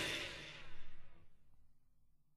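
Final chord of a thrash metal track with electric guitars and drums, ringing out and fading away, with one brief faint swell about half a second in before it dies to silence.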